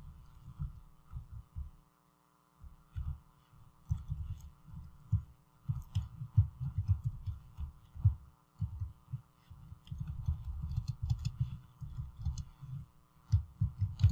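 Computer keyboard typing: irregular keystrokes that come through mostly as dull low thumps, several a second, with a short pause about two seconds in, over a faint steady electrical hum.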